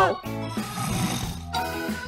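A man snoring in his sleep, over background music.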